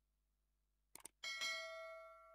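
Subscribe-button animation sound effect: a quick double mouse click about a second in, then a bright notification bell chime that rings on and slowly fades.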